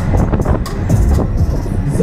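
Loud fairground ride music heard from a spinning Huss Break Dance car, over low rumble and wind buffeting on the microphone as the car whirls round.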